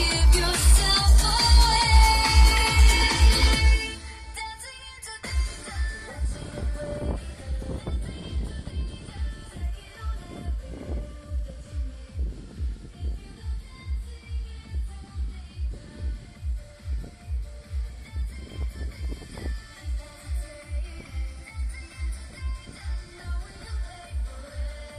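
Electronic dance music played loud on a Pioneer car stereo, with a heavy bass beat about twice a second. About four seconds in, the upper range falls away and mostly the bass beat carries on, muffled as heard from outside the car.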